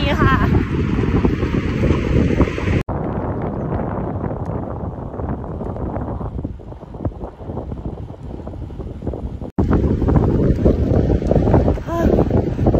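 Wind rushing over the microphone of a camera on a moving bicycle, a steady low rumble. About three seconds in it drops abruptly to a softer, duller rumble, and it comes back louder near the ninth second.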